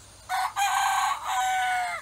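A rooster crowing once: a short first note, then a long drawn-out cock-a-doodle-doo with a brief dip in the middle. The last note falls slightly and cuts off suddenly.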